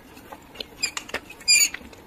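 A metal spoon tapping and scraping inside a glass cup, making a few small crisp clicks. About one and a half seconds in comes a brief, loud, high squeaky ring, the spoon scraping against the glass.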